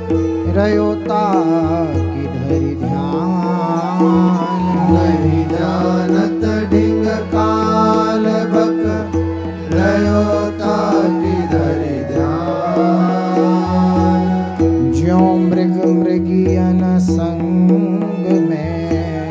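A male voice singing a devotional verse (bhajan) to a harmonium, the harmonium holding steady drone notes under the sung melody.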